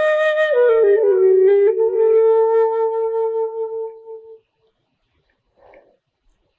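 Background music: a flute playing a slow melody that steps down through a few notes to one long held note, which fades out about four seconds in.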